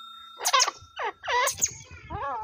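Francolin calling: about four short calls over a second and a half, each note falling in pitch.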